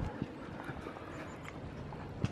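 Footsteps on stone paving: a few faint steps over a steady outdoor background hum.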